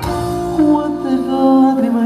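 Live band playing a Portuguese popular song on keyboard and electric guitar, with a melodic line of held, gliding notes; the drum strokes drop back in this stretch.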